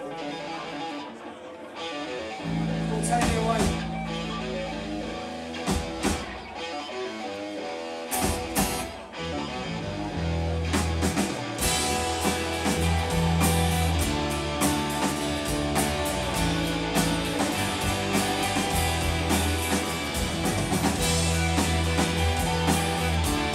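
A live Britpop indie band opening a song. Guitars and bass start with a few scattered drum hits, and the full band with drums and cymbals comes in about halfway through.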